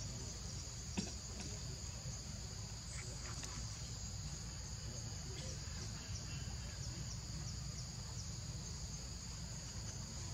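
Steady chorus of insects, a continuous high-pitched buzz in two close pitches, over a low steady rumble. One sharp click about a second in, with a few faint ticks around three seconds.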